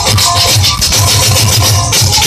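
Loud live folk music with a fast, steady dhol beat and a higher melody line held above it.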